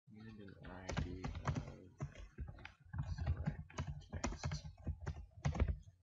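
Typing on a computer keyboard: a steady run of keystrokes with short pauses between them. A voice speaks under the typing.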